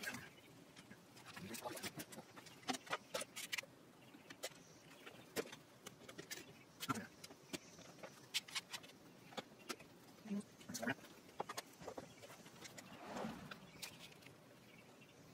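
Faint, scattered clicks and knocks of one-handed bar clamps being handled and adjusted on a glued-up wooden guitar body blank.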